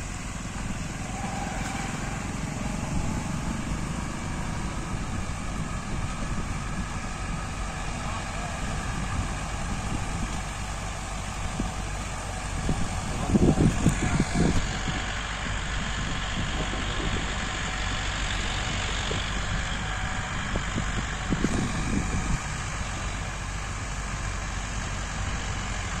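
Diesel farm tractor engines running steadily under load. Loud low thumps from wind or handling on the microphone come about halfway through and again later.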